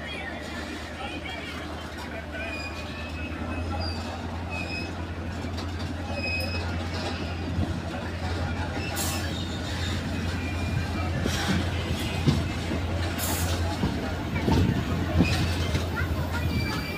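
Running noise of a train heard from its window while passing a long freight train: a steady low drone with a few sharp clicks of wheels over rail joints.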